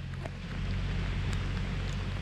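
Wind rushing over the microphone on a moving open chairlift, with a steady low hum underneath.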